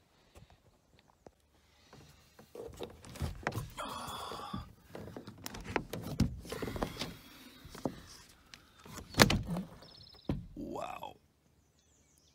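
Knocks, clicks and rustling as a person climbs out of a truck-bed camper. The loudest sound is a sharp thump about nine seconds in, after a quiet first couple of seconds.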